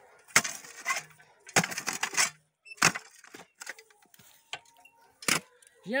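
Post-hole digger being driven into soil: a series of sharp strikes about every half second for the first three seconds, then one more near the end.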